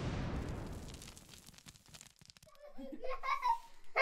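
A large confetti-filled balloon bursts at the very start, followed by a rustling hiss of confetti showering down that fades over about a second and a half. Children's excited voices start up near the end.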